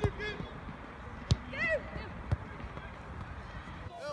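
A soccer ball kicked twice on a grass pitch, two sharp thuds about a second apart. Brief distant shouts from players come between them, over wind noise on the microphone.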